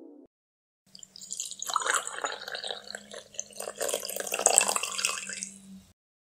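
Liquid pouring and splashing, irregular and uneven, starting about a second in and running about five seconds, with a faint steady low hum beneath.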